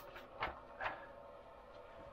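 Faint rustle of a paper instruction manual's pages being turned by hand, two brief rustles about half a second apart near the start, with quiet room tone around them.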